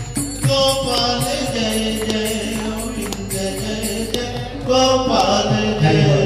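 Devotional chant sung to music, with long held notes; a louder phrase begins about five seconds in.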